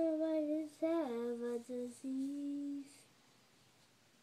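A young girl singing slow, drawn-out notes without clear words, one note gliding down in pitch about a second in; the singing lasts about three seconds.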